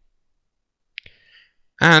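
A single computer mouse click about a second in, after a second of near silence.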